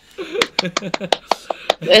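Quick hand clapping, about five claps a second for a second and a half, with a voice faintly underneath.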